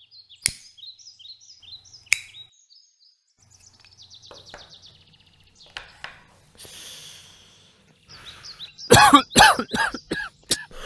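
Small birds chirping, with two sharp clicks early on. About a second before the end, a man breaks into loud, repeated coughing.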